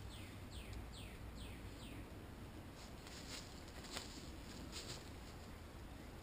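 A bird calling a quick run of about five downward-sliding high notes, evenly spaced, then a few faint snaps in quiet woodland.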